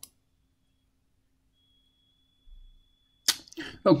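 A single computer-mouse click, then near silence for about three seconds. Near the end a short, sharp noise, and a man's voice begins speaking.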